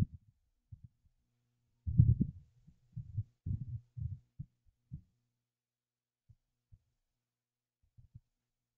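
Irregular low, dull thumps and bumps, most of them clustered between about two and five seconds in, over a faint low hum.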